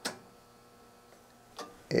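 A sharp click from a rotary range switch on a transistor curve tracer as it is turned, followed by faint room tone with a small click near the end.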